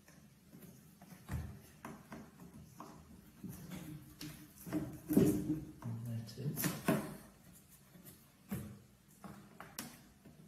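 A small knife scraping and nicking at packing tape along the edge of a cardboard shoe box: a run of short scratchy scrapes and clicks, busiest and loudest in the middle.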